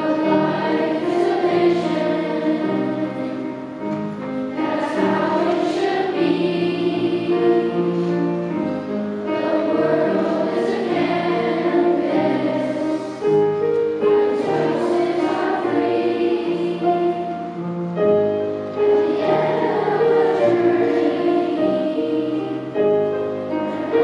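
A large children's choir singing a song in parts, with piano accompaniment.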